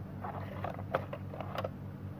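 Several light clicks and taps as a bare mobile-phone circuit board is handled and turned over on a hard plastic surface, over a steady low hum.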